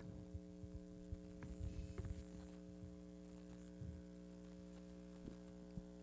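Steady electrical mains hum, several steady tones at once, with a few faint low bumps about two seconds in and again near four seconds.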